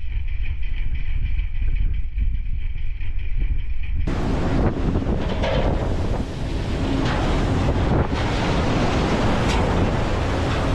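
Wind buffeting the microphone over the low rumble of a fishing boat under way and the rush of sea water along its hull. About four seconds in, the sound jumps to a brighter, louder hiss of spray and breaking wash.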